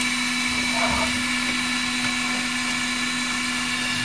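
Dremel Digilab 3D45 3D printer running during a filament change: a steady machine hum with a low drone and several steady high whines, from its fans and extruder motor as the heated extruder pushes out the old filament.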